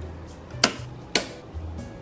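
Two sharp clicks about half a second apart: a circuit breaker in a home electrical panel being switched off and back on to reset a tripped circuit. Background music with a low bass line plays under it.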